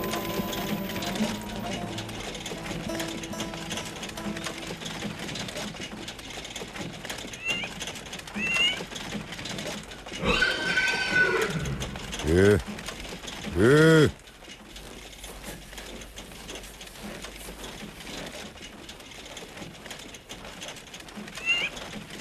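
Film music fading out in the first few seconds, then a quiet stretch with a few short high chirps. About ten seconds in come a man's loud wordless calls, the last two rising and falling in pitch, likely shouts to a horse.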